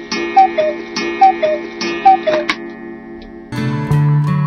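A tick-tock figure: a sharp tick followed by a two-note high-then-low tone, repeating a little faster than once a second over a sustained musical drone. Near the end it stops and a strummed acoustic guitar comes in.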